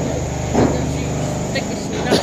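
Steady low machine hum in an underground parking garage, with a short louder voice sound about half a second in.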